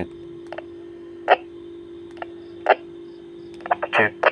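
A few short, sharp clicks about a second apart over a steady low hum, as the push-to-talk and keys of handheld two-way radios are pressed during a transmit-and-receive test.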